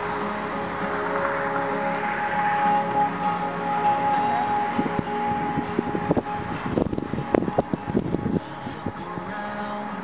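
Music playing from the Sequoia's factory stereo, heard inside the cabin. A quick run of clicks and knocks comes in the second half.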